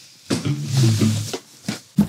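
Cardboard packaging box being opened, its lid and flaps rustling, with a low wordless hum from a voice in the first half.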